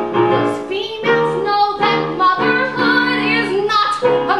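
A woman singing a comic musical-theatre song with piano accompaniment, her held notes wavering with vibrato.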